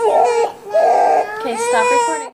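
Young child crying in long, high, drawn-out wails, with a brief break about a quarter of the way in.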